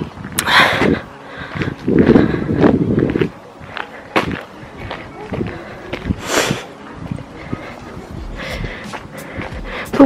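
Footsteps of someone walking on a gravel and grass path, a string of short irregular crunches. In the first three seconds, two louder bursts of low rushing noise on the microphone.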